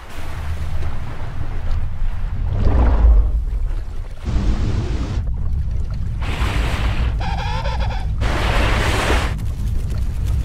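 Cartoon soundtrack of tense music over a deep, continuous low rumble and sea sound effects as an orca's fin closes in on the penguins' ice floe. A wavering tone lasts about a second, a little past the middle.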